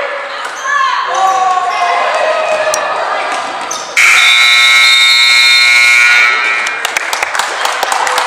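Gymnasium scoreboard horn sounding one loud, steady buzz for about two seconds, starting about halfway through, over players and spectators shouting. A few sharp ball bounces and sneaker squeaks follow.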